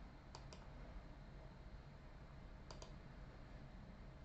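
Near silence: room tone with two faint quick double clicks, one just after the start and one about two-thirds of the way through.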